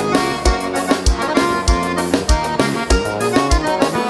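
Gaúcho fandango dance-band music playing instrumentally between sung lines: accordion-led melody over a steady low drum beat, about one beat every 0.6 seconds.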